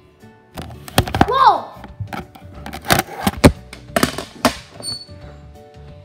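Background music plays under a run of loud knocks and clatter from about half a second to four and a half seconds in, with a short voice exclamation that rises and falls in pitch among them.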